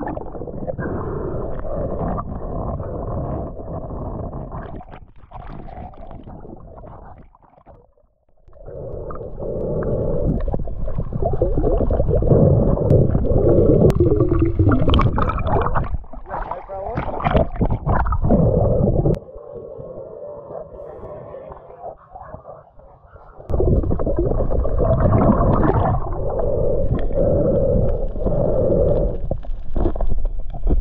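Muffled water noise and bubbling heard underwater through an action camera's waterproof housing as a spearfisher swims and dives. The sound drops away sharply about eight seconds in and is quieter again for a few seconds around twenty seconds.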